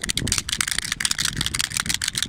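Plastic hand-clapper toys (hands on sticks with flapping fingers) being shaken hard, giving a rapid, irregular clacking.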